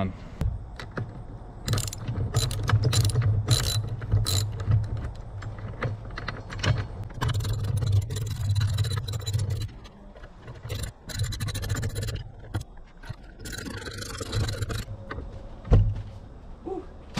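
Socket ratchet wrench clicking in runs as bolts are tightened on a steel awning mounting bracket, with sharp metal knocks as the bracket and bolts move against the roof-rack track.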